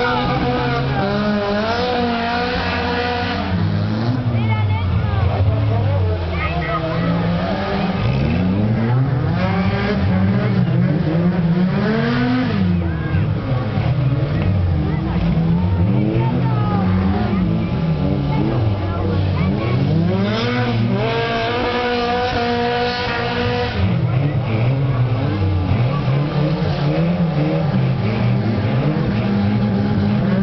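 Several stock car engines running and revving at once, their pitches rising and falling over and over as the cars accelerate and back off on the dirt track, overlapping into a continuous loud din.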